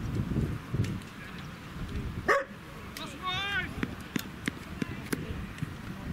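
Voices on an outdoor sports field, with a sharp rising high yelp about two seconds in and a brief wavering high-pitched whine just after it.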